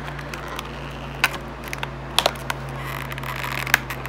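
Stiff plastic blister packaging crackling as a small hooked cutter is worked against it, with a few sharp clicks and snaps as the plastic flexes; the cutter does not get through well.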